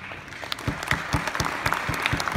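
Audience applause in a conference hall, filling in quickly, with loud, evenly spaced claps from one pair of hands close by at about four a second.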